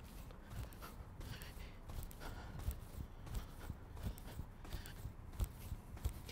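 Trainers landing again and again on artificial turf during continuous jumping: a faint, quick, uneven series of light thuds, several a second.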